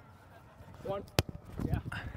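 A volleyball struck hard by a hand once, a single sharp smack a little past a second in, with players' short shouts around it.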